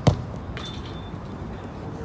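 A soccer ball kicked in a shot, a sharp thump, then about half a second later a fainter knock as the ball strikes the metal goal frame, leaving a brief high ring: a near miss off the post.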